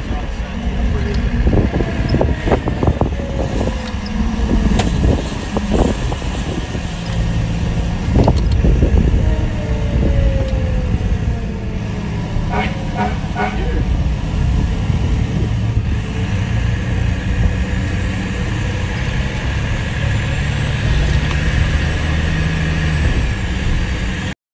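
Fire engine's diesel engine running steadily, heard from inside the cab as the truck drives, with indistinct voices over the engine noise.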